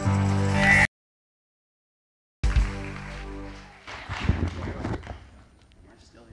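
A live worship band of drums, keyboard and bass holding a final chord. The audio cuts to dead silence for about a second and a half, then the chord returns briefly and dies away, followed by a few faint knocks.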